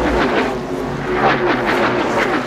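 Loud motor-vehicle engine revving, its pitch sliding up and down, heard as a sound effect under a show's break bumper.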